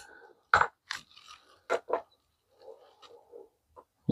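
Sharp small clicks and light rustling from a screwdriver and T10 Torx bit being picked up and handled: a handful of clicks in the first two seconds, then softer rustle.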